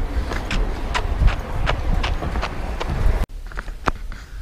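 Footsteps on a pavement, about two to three steps a second, over a low rumble of handling noise from a body-worn camera. The sound cuts off suddenly a little after three seconds in, leaving quieter indoor room sound with a couple of clicks.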